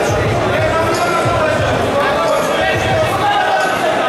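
Several voices shouting in an echoing sports hall, with repeated dull thuds underneath.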